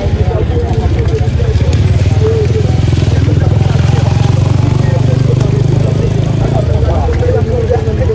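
Motorcycle engine running under the rider, a steady low pulsing hum that grows louder in the middle and eases off near the end. Voices from the street are heard over it.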